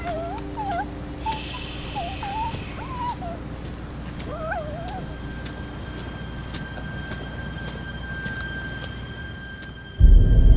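A bird calling outdoors: short wavering, warbling calls repeated over the first five seconds, over a low steady rumble. A thin, high, steady tone comes in about halfway and holds.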